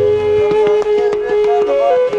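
Background music: a flute holding long notes that slide from one pitch to the next, over light, regular percussion strokes.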